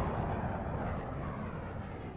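Tail of a logo sting sound effect: a deep noisy rumble that fades away steadily.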